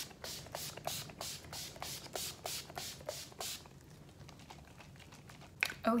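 Fine-mist pump bottle of Urban Decay De-Slick setting spray spritzed over and over in quick succession, about three short hisses a second, stopping after about three and a half seconds.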